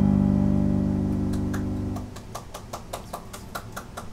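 A final chord on a Roland digital piano rings out, fading slowly, and is cut off about two seconds in at the end of the piece. A string of faint, irregular clicks follows.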